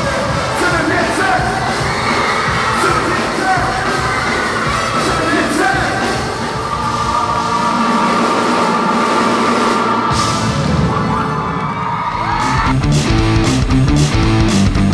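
Live band music with singing and crowd voices mixed in. About thirteen seconds in, a held note cuts off and a full drum kit comes in with a steady beat.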